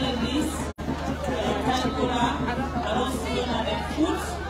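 Speech: a woman talking into a handheld microphone, over a steady low hum. The sound cuts out for an instant just under a second in.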